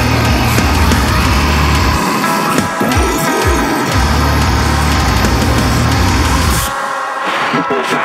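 Deathcore song: heavy, dense downtuned guitars, bass and drums, with a guttural vocal over it. A few deep falling sweeps sound in the low end about two to three and a half seconds in. Near the end the bass drops away, leaving a thinner guitar part.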